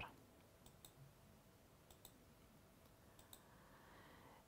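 Near silence: room tone with three faint pairs of short clicks, about a second apart.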